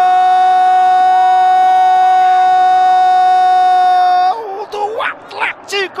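Football TV commentator's drawn-out goal shout, "Goooool", held on one pitch for over four seconds. It breaks off into a few short rising vocal cries near the end.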